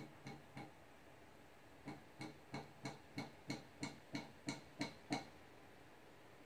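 Faint, evenly spaced light clicks. A few come right at the start, then after a pause a steady run of about ten at roughly three a second.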